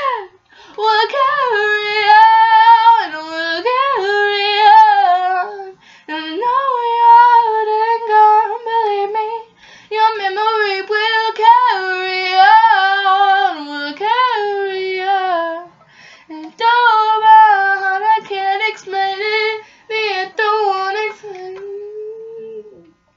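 A young woman singing unaccompanied, a melody with sliding notes in several phrases broken by short pauses about 6, 9½ and 16 seconds in.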